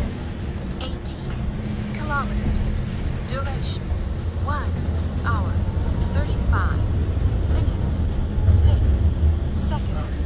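City bus in motion heard from inside the cabin: a steady low engine and road rumble that swells briefly near the end.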